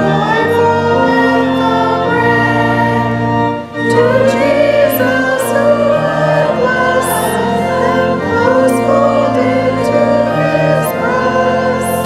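A church choir singing with sustained low accompaniment notes underneath. There is a brief break between phrases about four seconds in.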